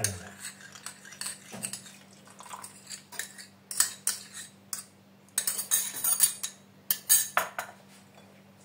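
Metal spoon scraping and clinking against a small glass bowl, scraping a coffee-and-milk mixture out of it, in short irregular strokes that come in clusters in the second half. A faint steady low hum lies underneath.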